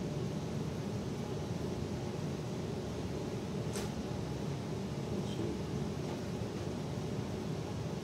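Steady low background hum of room noise, with a single short click a little before the middle.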